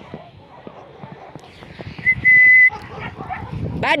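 A person whistles one steady high note for well over half a second, about two seconds in, calling a dog. Faint scuffing and rustling of steps over snowy ground runs underneath.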